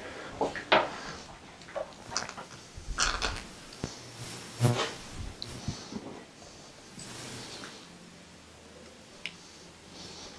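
Metal hand tools and small pump parts being handled and set down on a bench: a run of clicks and clinks over the first six seconds, then quieter, with one faint click near the end.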